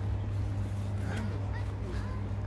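A steady low hum under faint outdoor background noise.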